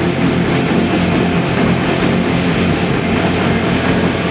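Punk rock band playing live: electric guitars, bass guitar and drum kit together, loud and steady.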